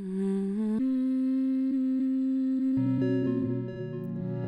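A hummed vocal sample playing from a clip: a held hummed note that changes to a steadier, slightly higher note about a second in. Near the end a low synthesizer part joins underneath.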